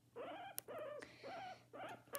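Pet guinea pig giving a quiet series of four short calls, each rising and falling in pitch, about half a second apart, with one sharp click among them.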